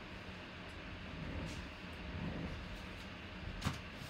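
Quiet handling of a trading-card pack and its envelope: soft rustling with one short sharp click near the end, over a steady low hum.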